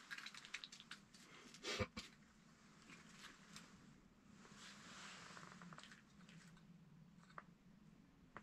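Near silence, with faint scattered rustles and small clicks and one brief, louder rustle just under two seconds in.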